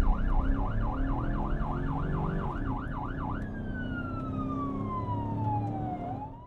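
Siren sound effect on the show's closing sting: a fast yelp rising and falling about four times a second, then about three and a half seconds in it changes to one long falling wail, over a low steady drone.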